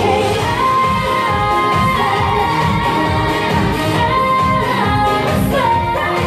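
Korean pop song with female vocals over a steady beat, played loud for a stage dance performance.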